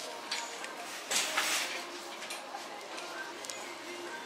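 A glass spray bottle is pumped, giving a short hiss of spray about a second in, over low shop background with faint voices.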